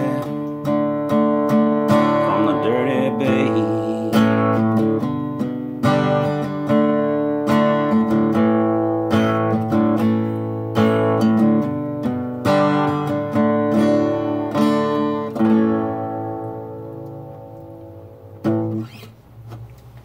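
Acoustic guitar strummed through a song's closing chords, the last chord left to ring and fade from about three-quarters of the way in. A short knock comes near the end.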